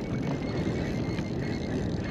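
Steady low rumbling noise of wind and water around a kayak on open water, with a few faint ticks.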